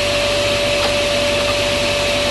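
Sliding table saw running with no cut being made: a steady motor and blade whine over broad noise, with a faint tap about a second in.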